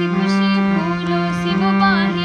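Harmonium sounding sustained reed chords that shift to new notes about every second, with a girl's voice singing a slow, ornamented melody over them.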